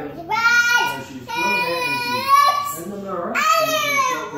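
A young girl singing, holding long notes that slide up and down in pitch with short breaks between phrases.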